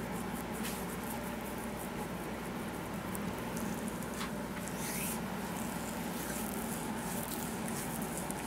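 Gel-slicked hands gliding and squeezing along a bare leg in a massage, making faint wet slipping and squelching clicks, with a brief brighter hiss about five seconds in, over a steady low hum.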